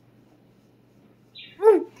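Faint room hum, then near the end a girl's brief high-pitched vocal sound that rises and falls in pitch as she starts to laugh.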